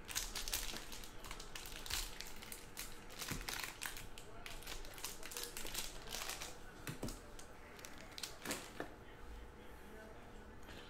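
Foil trading-card pack wrapper crinkling and crackling as it is torn open and handled, with a few sharper clicks from cards in plastic holders.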